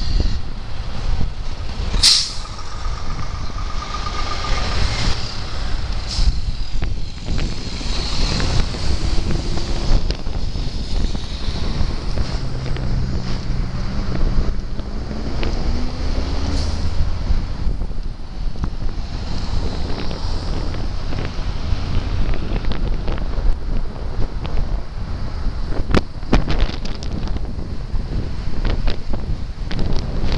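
Heavy truck traffic heard from a moving bicycle, with wind rushing over the microphone. A short, sharp air-brake hiss comes about two seconds in, and a truck's diesel engine rises in pitch as it pulls away around the middle.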